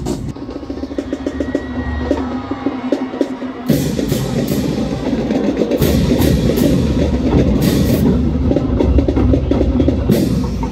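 Marching band playing in the stands: a fast drumline beat under low sousaphone and brass parts. About four seconds in the sound jumps abruptly to louder, fuller playing.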